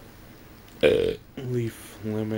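A man burps loudly once, about a second in, then gives a short low voiced grunt.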